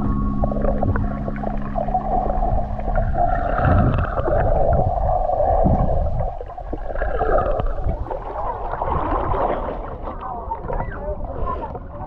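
Muffled underwater sound picked up by a swimmer's handheld camera: water churning and bubbling over a low rumble. A steady held tone runs through the first second and a half, then stops.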